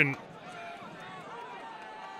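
Football stadium crowd noise from the stands, steady and low, with faint voices rising and falling through it.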